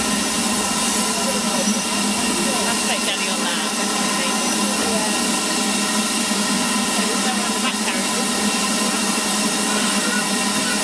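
Steam locomotive standing with steam escaping in a loud, steady hiss, while railway coaches roll slowly past.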